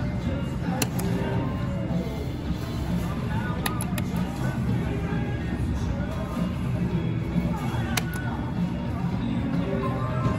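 Casino floor din: slot-machine music and tones over a steady babble of voices, with a few sharp clicks about a second in, around four seconds in and near the end.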